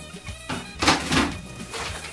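Background music, with a short clatter of a clear plastic storage container and its lid being handled a little under a second in.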